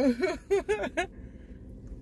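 A person laughing: a quick run of short, breathy 'ha' bursts in the first second that stops abruptly, leaving quiet.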